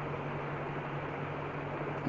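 Steady background hiss with a low, even hum beneath it, unchanging throughout.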